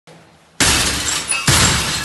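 Two loud breaking crashes about a second apart, the first about half a second in, as a police entry team forces its way into a house.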